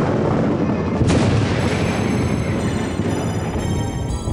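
A loud, dense rumbling noise like a boom or blast, with a sharp crack about a second in, layered over music whose sustained notes come back through the rumble in the second half.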